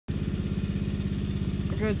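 Riding lawn mower's engine running steadily as it drives by, with a fast, even pulse.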